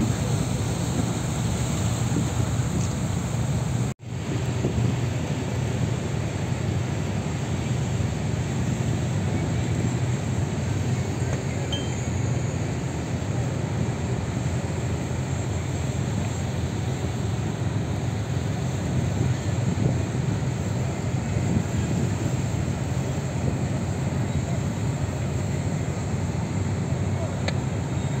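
Steady drone of a river cruise boat's engine under wind and water noise, with a constant low hum. The sound breaks off for an instant about four seconds in.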